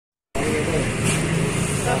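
Indistinct voices talking over a steady background noise, which starts abruptly about a third of a second in.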